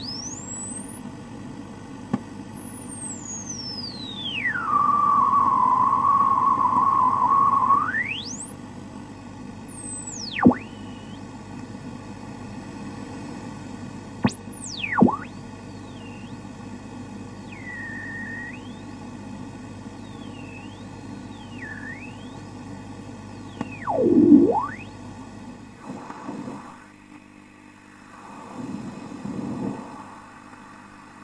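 Radio static: a steady hiss with interference whistles that sweep up and down in pitch. One whistle falls and settles on a steady tone for about three seconds before shooting back up, several quicker swoops follow, and the hiss drops lower near the end.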